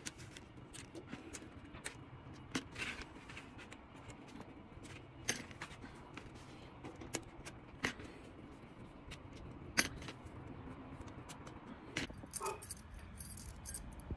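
Small metal retaining clips being twisted and pulled off plastic mesh truck-grill slats: scattered light clicks and snaps, with a brief metallic jingle of loose clips near the end.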